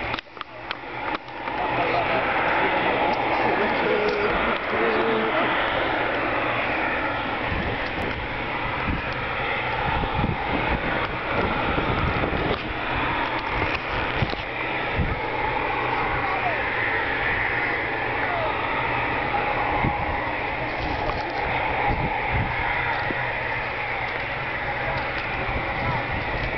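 Avro Vulcan's four Rolls-Royce Olympus turbojets running on a landing approach, heard from a distance as a steady rushing noise with a faint whine that drifts in pitch. People are talking over it.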